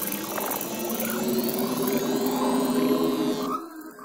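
Beatless ambient electronic intro of a trance track: layered sustained drones with a few gliding, whale-like sweeps, fading out about three and a half seconds in.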